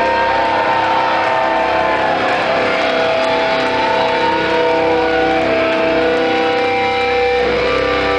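Distorted electric guitars from a live metal band holding ringing chords under a lead line of long notes that bend up and down in pitch.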